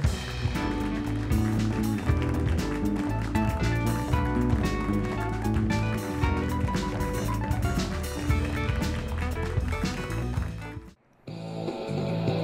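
Studio band playing a short upbeat instrumental with keyboard, a strong bass line and a steady beat. It breaks off abruptly about eleven seconds in, and a quieter, different music bed begins just after.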